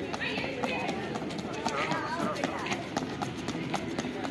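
Quick, irregular footfalls of training shoes slapping on brick pavers as an athlete runs and bounds against a resistance band held by a partner, with voices over them.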